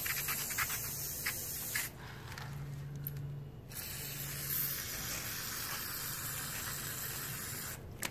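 Aerosol parts cleaner hissing out through its straw nozzle onto small drum-brake hardware. There is a spray of about two seconds, a pause of about two seconds, then a longer spray of about four seconds.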